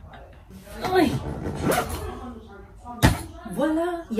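A woman's wordless vocal sounds and laughter as she strains to press down and close an overstuffed duffel bag, with a single sharp thump about three seconds in.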